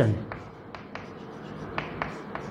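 Chalk writing on a blackboard: a run of short, irregularly spaced taps and scratches as letters are written.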